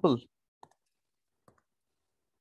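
End of a spoken word, then two faint, short clicks about a second apart: computer clicks while picking the pen colour and thickness.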